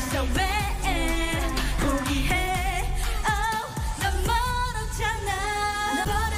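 K-pop song: a woman singing in Korean, with vibrato on held notes, over a backing track of bass, beats and synths.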